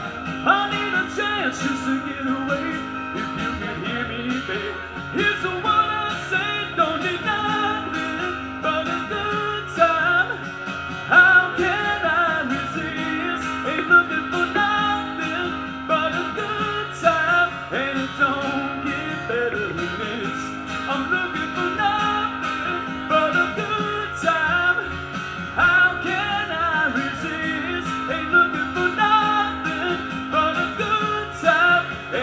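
Live music: an instrumental stretch of a country-rock song, with guitar to the fore and a repeating low figure.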